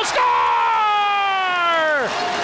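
A hockey play-by-play announcer's goal call: one long, drawn-out shout of "score!", held for almost two seconds and sliding slowly down in pitch.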